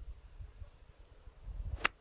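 Pitching wedge striking a golf ball from a rough lie: one sharp click near the end, over a low wind rumble on the microphone.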